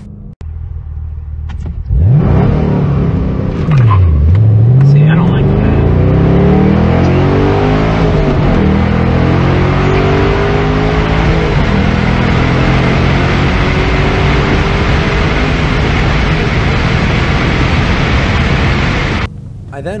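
2013 Camaro SS 1LE's 6.2-litre LS3 V8 at full throttle on a timed acceleration run, heard from inside the cabin. It comes in suddenly about two seconds in and dips sharply about four seconds in, then climbs again with drops in pitch at each upshift. Wind and road noise build as speed rises.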